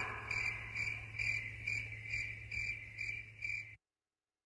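Cricket chirping: a string of short, evenly spaced chirps about twice a second, over a low steady hum. The sound cuts off suddenly near the end.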